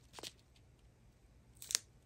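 Clear plastic zip bags of square diamond-painting drills crinkling as they are handled: a faint crackle just after the start and a couple of sharper crinkles near the end.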